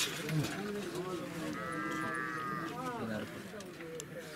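A single drawn-out bleat from a farm animal, held for about a second near the middle, over low, indistinct voices.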